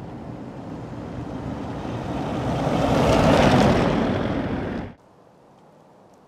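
A passing vehicle's noise rising steadily as it approaches, loudest about three and a half seconds in, then cut off suddenly.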